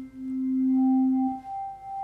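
GarageBand's Hammond organ emulation sounds one held C as a steady pure tone from the fundamental drawbar alone. About halfway through a higher pure tone, the G an octave and a fifth above from the black drawbar, comes in, and the fundamental drops out soon after. Faint tonewheel-leakage tones hum underneath.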